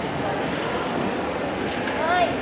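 Steady background hubbub of a crowded hall: many indistinct voices talking at once, with no single sound standing out.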